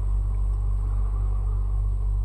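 A steady low hum with no change and no other sounds.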